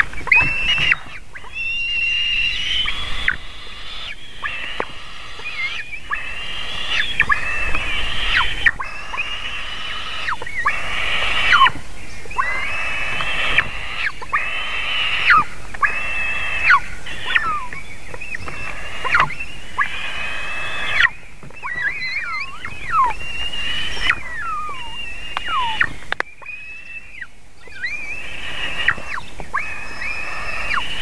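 Eaglets begging while being fed on the nest: a run of high, squealing calls, each bending up and down in pitch, about one every second or two, with a short lull about four seconds before the end.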